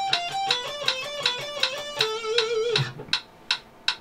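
Electric guitar playing a quick repeating four-note phrase along with a metronome clicking 160 beats a minute. About two seconds in it ends on a held note with vibrato, which stops just before three seconds while the metronome clicks carry on.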